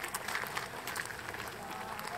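Footsteps of several people crunching along a gravel path, many quick irregular steps, with indistinct voices of passers-by in the background.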